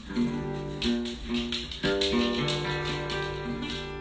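Acoustic guitar being picked, single notes and chords ringing out loosely, with a louder strum about two seconds in.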